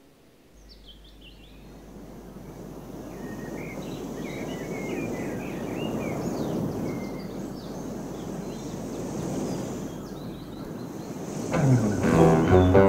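Recorded birdsong, many short chirps, over a wash of noise that swells up from near silence, a sound-effects passage within a progressive folk-rock track. A rock band with guitar and bass comes in loudly just before the end.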